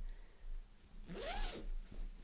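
Zipper of a fabric project bag being pulled, one short rasp about a second in that rises and falls in pitch.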